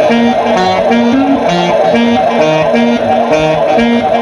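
Loud electronic dance music played by a DJ through a club sound system, built on a short melodic riff of clipped notes that repeats over and over.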